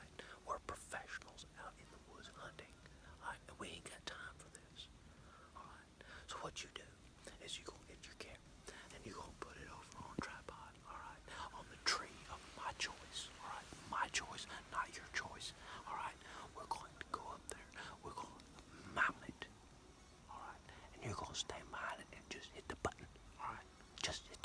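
A man whispering close to the microphone, speaking continuously in a low voice.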